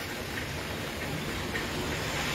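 Steady light rain falling on a flooded road and the puddles on it, an even patter with no distinct events.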